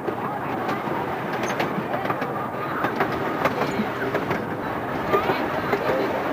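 Miniature park train running, its open passenger car rolling along with a steady rumble and irregular clicks and clatter from the wheels on the track.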